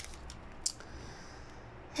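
Faint handling of a small plastic bag of diamond-painting drills, with one short, sharp crinkle about two-thirds of a second in, over low room hum.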